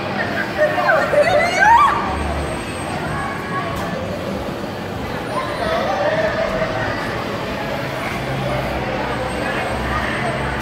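Riders on a swinging amusement ride crying out, with rising excited shouts loudest about one to two seconds in and another drawn-out cry a little past the middle, over a steady hubbub of crowd voices.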